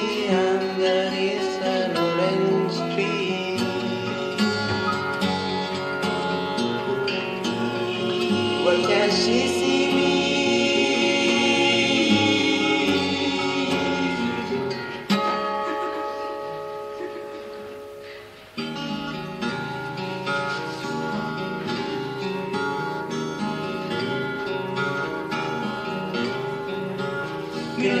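Two acoustic guitars played live with sustained wordless vocal harmonies. The music fades away a little past the halfway point and comes back in abruptly a few seconds later.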